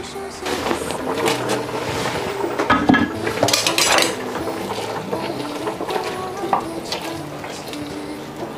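Kitchen prep sounds: scattered knocks and clinks from a cleaver on a cutting board and utensils against a stainless steel pot, under steady background music.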